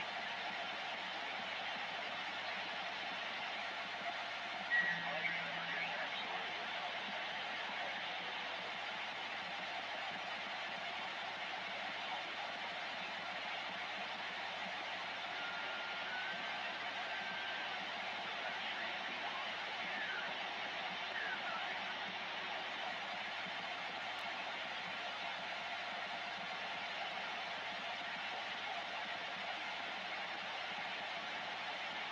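Steady hiss of band noise from a Ranger 2995 DXCF CB base station receiving on channel 17, 27.165 MHz AM. A few faint, brief heterodyne whistles sound in the noise, with a short louder blip about five seconds in.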